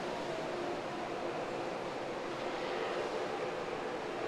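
Ocean surf churning through a sea cave, a steady wash of water, with faint, drawn-out, eerie elephant-like calls of sea lions in the first half.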